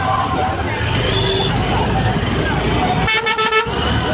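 A vehicle horn gives a short, rapidly pulsing blast about three seconds in, over the low rumble of vehicle engines.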